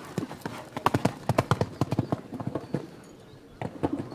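Hoofbeats of a show-jumping horse, a Dutch warmblood gelding, cantering on a sand arena: a quick run of dull strikes that eases for a moment about three seconds in, then picks up again.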